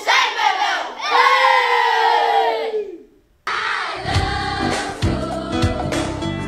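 A class of children shouting and cheering together, ending in one long group shout that slides down in pitch. It cuts off suddenly, and background music with a beat starts about three and a half seconds in.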